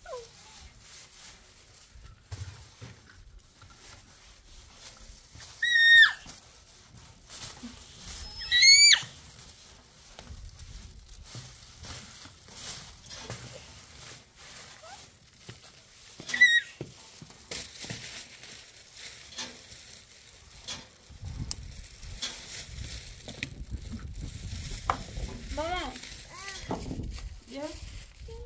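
A cloth wiping and rubbing over a door's glass and metal panels, with three short, sharp, high squeaks, the second rising in pitch. Near the end a child's voice chatters.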